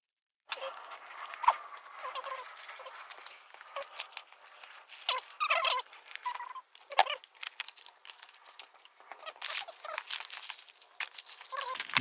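Plastic and foil food packets crinkling and tearing, with small clicks and knocks against plastic containers, starting about half a second in. This is the handling of a self-heating hot pot kit. About halfway through, water is poured from a plastic bottle into the heater container.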